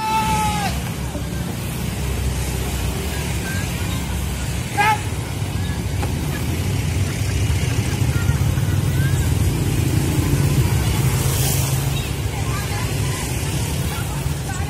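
Roadside street noise: motorcycle engines running and passing, with a steady low rumble, under crowd voices. A short call falls away right at the start, and another brief, louder call comes about five seconds in.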